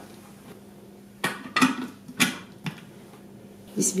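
Four sharp hard-plastic clicks and knocks, spread over about a second and a half from about a second in, as the lid and motor top of a Bosch mini food processor are fitted and locked onto its bowl.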